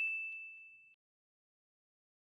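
Single bright ding of a notification-bell sound effect: one high tone with fainter overtones ringing and fading out by about a second in.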